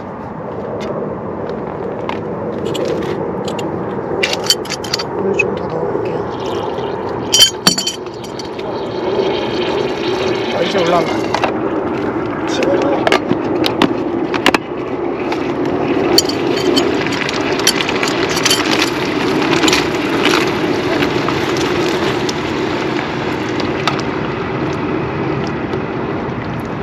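A flameless self-heating pack reacting with water in its container: a steady bubbling hiss that grows gradually louder. Scattered clicks and clatters of a plastic food container being handled run through it.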